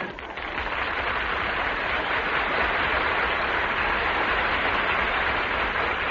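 Studio audience applauding: a steady wash of clapping that builds over the first second and holds.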